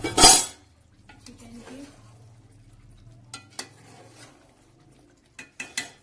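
A steel ladle stirring and scraping through curry in an aluminium pot while it is fried down (bhuna). There is a loud clank just after the start, then quieter stirring, and a few sharp clinks of the ladle against the pot in the middle and near the end.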